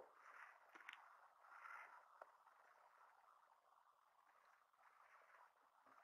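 Near silence: faint distant noise from the street outside, with a couple of very faint ticks.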